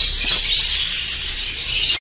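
A large flock of budgerigars chattering steadily, a dense mass of high-pitched chirps and warbles.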